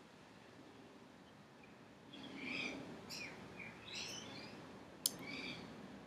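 Faint bird chirping. Short, pitch-sweeping calls begin about two seconds in and come several times, with a single sharp click about five seconds in.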